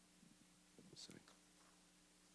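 Near silence: a faint steady electrical hum, with a brief faint murmur of speech about a second in.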